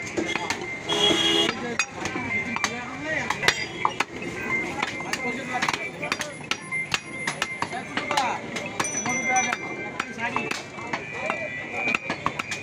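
Butcher's large knife cutting beef on a wooden log chopping block: many short, sharp knocks of the blade against the wood, over background voices.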